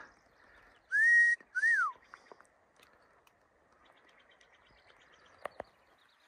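Two loud, clear whistled notes about a second in: the first sweeps up and holds, the second sweeps up and then falls away. Faint clicks follow near the end.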